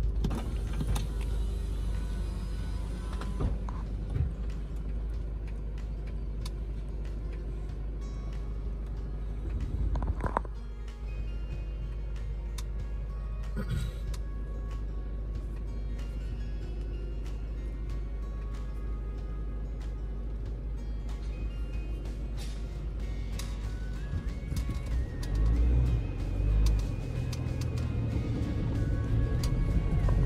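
Mercedes-Benz Sprinter van's diesel engine idling, heard from inside the cab, with heavier low rumbling from about 24 seconds in as the van pulls away. Background music plays over it, and scattered light ticks come in the second half.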